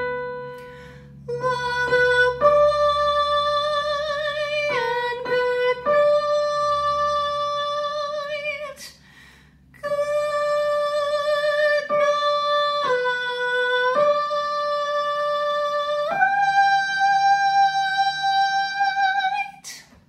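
A woman singing the tenor harmony part of a barbershop tag alone, after a single keynote B that dies away briefly at the start. Her line steps back and forth between two notes, breaks off for about a second halfway through, and ends by rising to a long high note held for about three seconds.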